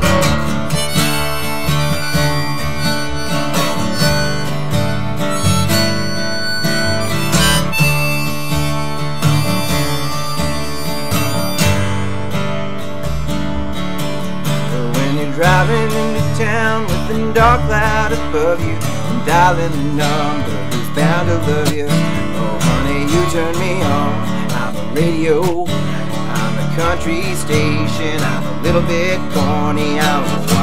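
An instrumental passage of a small acoustic band: a harmonica in a neck rack playing the lead over a strummed acoustic guitar and an upright double bass. The harmonica holds steady chords at first, and its notes waver more from about halfway through.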